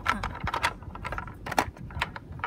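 Hard plastic toy parts clicking and clattering as they are handled: a run of irregular light clicks and knocks, a couple of them louder.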